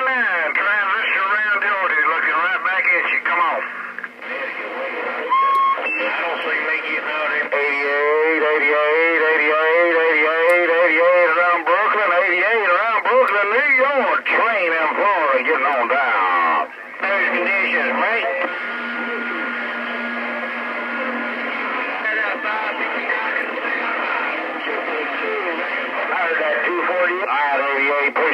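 Stryker CB radio's speaker receiving long-distance skip transmissions: voices come through garbled and narrow-sounding under interference. A short steady whistle comes through about five seconds in.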